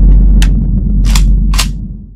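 Studio logo sound effect: a deep, loud rumble that slowly dies away, with three short bursts of noise about half a second apart as the logo glitches out.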